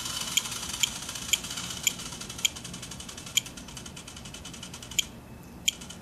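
Short electronic beeps from a Spektrum DX7s radio transmitter as its roller is scrolled one step at a time, about two a second, then quicker. Underneath is the faint whir and gear ticking of a Hitec HSR-1425CR continuous-rotation servo slowly turning a GoPro, its speed set low through the flap channel.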